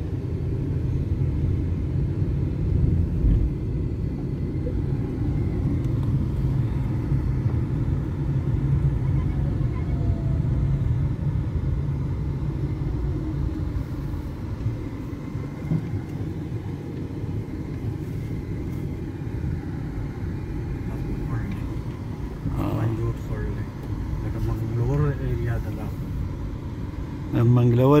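Inside a moving car on an unpaved gravel road: the steady low rumble of the engine and tyres fills the cabin.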